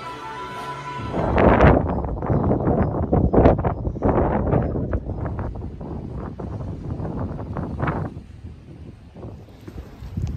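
About a second of music, then wind buffeting the microphone in uneven gusts, loudest early and fading toward the end.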